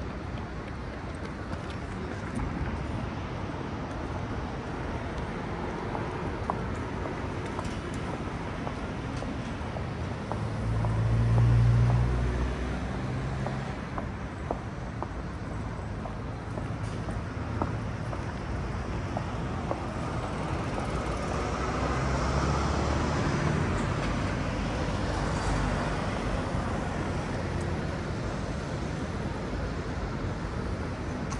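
City road traffic noise, a steady hum of passing vehicles. A vehicle passes close about eleven seconds in, and a longer, louder stretch of traffic comes later.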